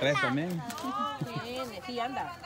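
Speech only: several people talking with unclear words, some of the voices high-pitched.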